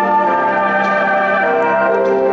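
Orchestral music with brass playing long held notes: the ice dancers' program music.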